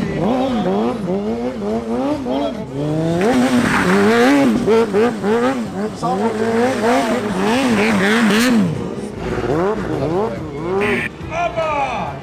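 Stunt motorcycle engines blipped over and over, the pitch rising and falling about twice a second, as riders hold a tight, leaned-over line at low speed. Tyre squeal rises briefly around the fourth and eighth seconds.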